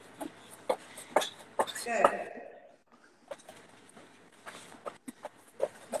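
Quick light thumps, about two or three a second, of a person skipping in place without a rope, feet landing on a wooden floor.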